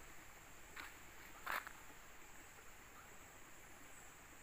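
Quiet outdoor ambience: a faint steady high insect buzz, with two brief soft scuffs about one and one and a half seconds in.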